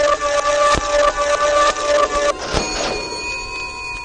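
Electronic sound effect for a cartoon mad scientist's machine: a steady humming tone that cuts off about two and a half seconds in, followed by thin, high held tones, with a couple of sharp clicks.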